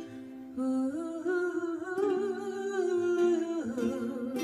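A woman singing a slow melody in long held notes with vibrato, accompanied by a ukulele.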